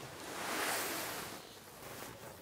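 A soft rustle that swells and fades over about a second and a half, from hands and a sleeve moving as the client reaches toward the fanned-out cards.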